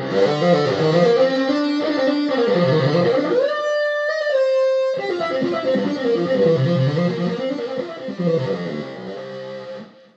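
Electric bassoon played through a Line 6 M13 effects pedal on an overdrive setting: a distorted, continuous melodic line moving from note to note. There is one note held for about a second and a half in the middle.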